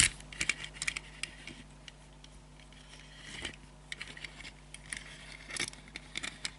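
Small 1:64 diecast model car being handled and turned by fingers on a tabletop: scattered faint clicks, taps and short scrapes of fingertips and the little wheels on the surface. The clicks come most thickly in the last two seconds.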